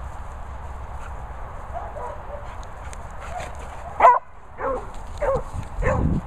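Dog barking in rough play-fighting: four short barks in the last two seconds, the first the loudest.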